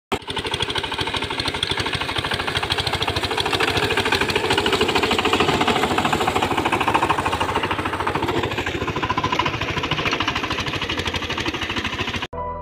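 VST Shakti 13 DI power tiller's single-cylinder diesel engine running steadily under load as its rotary tiller churns a flooded paddy, a loud, rapid, even knocking.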